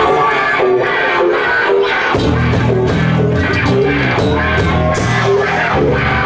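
A rock band playing live: electric guitar notes, with the bass and drums coming in about two seconds in.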